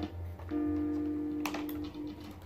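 Stratocaster-style electric guitar through an amplifier: a single B flat note picked about half a second in and left to ring steadily for about a second and a half, with a faint click partway through. A low steady hum sits underneath.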